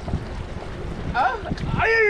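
Wind rumbling on the microphone, with water washing against jetty rocks; a man's voice calls out briefly twice in the second half.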